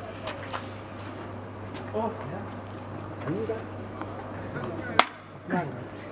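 Steady high-pitched buzz of insects, with faint voices now and then and a single sharp click about five seconds in.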